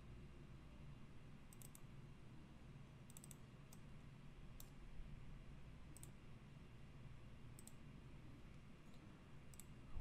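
Near silence with faint computer mouse clicks, single and in small clusters a second or two apart, over a low steady hum.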